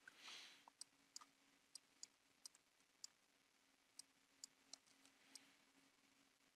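Faint computer mouse clicks, about a dozen at irregular intervals, over near silence with a low steady hum. A short soft hiss comes just after the start.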